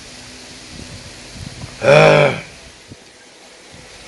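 A man's short vocal reaction while eating spicy sambal: one loud, drawn-out 'mmm'-like sound about two seconds in, rising then falling slightly in pitch, with a few faint chewing clicks around it.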